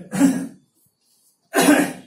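A man coughing: a brief harsh sound just after the start, then a loud cough near the end.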